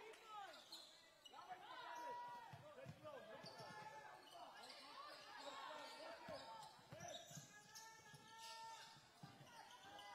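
Basketball game play on a hardwood court, quiet: the ball bouncing a few times with dull thuds, sneakers squeaking sharply and often on the floor, and players' voices calling out now and then in a large hall.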